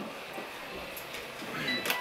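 Steady room noise with faint, indistinct voices, and a brief thin high tone near the end.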